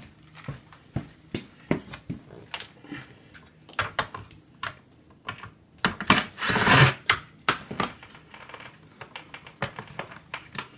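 Power drill-driver running for about a second, past the middle, driving out a Torx T15 screw from a car seat's plastic side trim. Scattered clicks and knocks of the tool and hands on the seat frame come before and after it.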